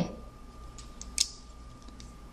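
A few faint clicks, the sharpest about a second in, from a loom hook and rubber bands being worked on the pegs of a plastic Rainbow Loom, over a faint steady hum.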